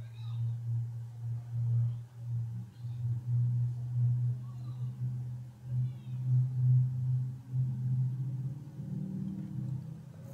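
A low droning hum that swells and fades every half second or so.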